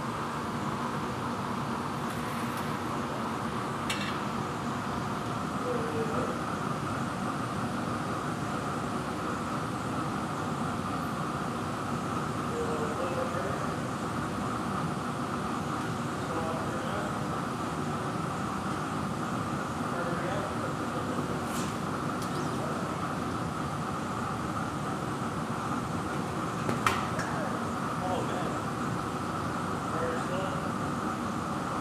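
Steady roar of a glassblowing hot shop's gas-fired furnace and glory hole burners, with a single sharp tap near the end.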